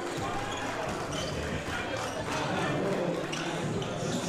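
Basketball bouncing on a hardwood gym court, a few separate thuds, under crowd chatter in a large echoing hall.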